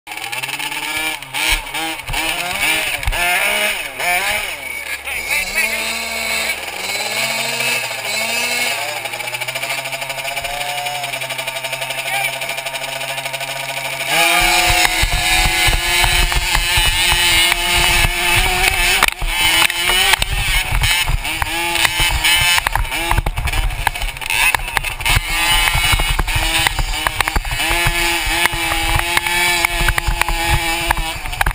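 Motocross bike engines revving at the starting gate, the pitch rising and falling. About 14 seconds in, the sound jumps suddenly louder as the bikes go to full throttle off the start and race down the straight.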